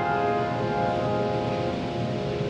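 A sustained piano chord ringing on and slowly fading away, the last chord of a piece, with no new notes struck.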